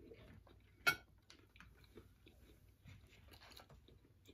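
Faint chewing and small mouth sounds of people eating, with scattered soft clicks and one sharper click about a second in.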